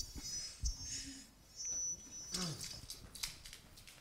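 Audience noise in a lecture hall: a couple of knocks near the start, rustling, a short sound falling in pitch about halfway through, and scattered small clicks as people shift in their seats.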